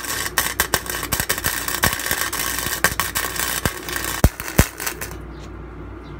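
Flux-core wire welder arc crackling and popping as a bead is laid on steel flat bar, stopping about five seconds in and leaving a low steady hum.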